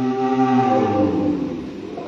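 Live concert music: several held, layered tones that slide down in pitch and thin out, at the tail of a flute solo.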